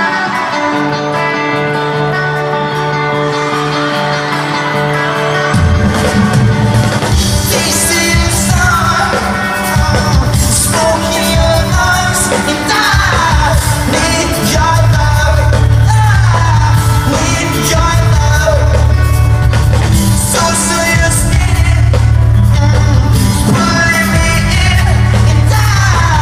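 Pop-punk band playing live in an arena, heard from the audience with the hall's echo. A sparse intro of held notes gives way about five seconds in to the full band, with drums and bass under the lead vocal.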